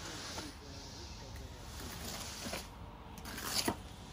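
Screed board being drawn back across wet exposed-aggregate concrete: a faint, even scraping of wet mix and stones, with a couple of short, sharper scrapes about two and a half and three and a half seconds in.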